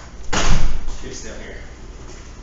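A single loud thud or slam about a third of a second in, dying away within about half a second.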